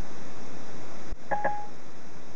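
Steady line hiss, a click about a second in, then a short electronic beep from Siri on the iPhone, played through the Ford Sync car speakers after the send command.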